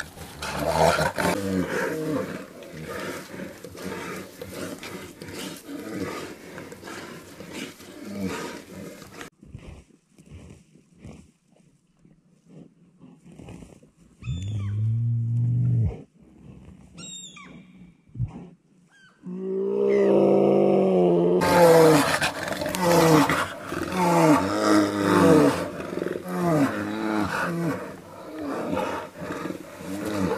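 Brown bears growling and roaring as they fight. The sound is loud for the first few seconds, then there is a lull broken by one short low growl, then loud roaring again through the last third.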